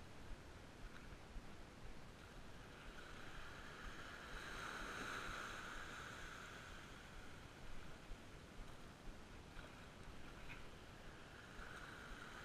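Faint wash of small waves on a sandy beach, with one wave rushing in and swelling about four seconds in and a smaller one near the end.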